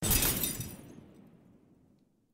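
Glass-shattering sound effect: a sudden crash at the start, then tinkling pieces fading away over about a second and a half.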